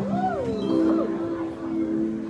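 Live rock band playing an instrumental passage over a held note, with a wailing sound that swoops up and falls away at the start and swoops again about a second in.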